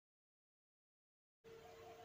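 Near silence: the sound track drops out entirely, with faint noise and a thin steady tone fading back in near the end.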